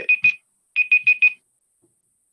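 Electronic phone ringtone: rapid high beeps in two short runs, about three and then four beeps, with a brief gap between.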